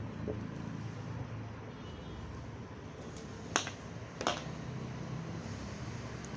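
Two sharp clicks, under a second apart, from tailoring tools (tape measure, ruler, chalk) handled on a cutting table, over a steady low hum.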